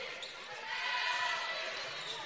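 Crowd murmur and court noise in a basketball gym during live play, a steady even din.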